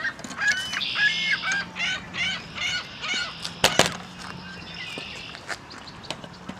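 Waterfowl calling in a quick series of short repeated notes through the first half, with two sharp clicks a little past the middle.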